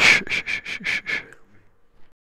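A rapid series of about six quick sniffs, some four a second, tailing off after about a second and a half.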